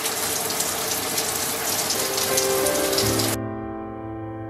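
Shower water spraying in a steady hiss, cutting off suddenly about three and a half seconds in.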